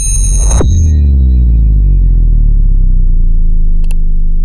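Synthesized intro sting: a sudden, loud, deep electronic drone that holds steady, with a bright high chiming layer at its start that fades within the first second. A short click comes just before the end.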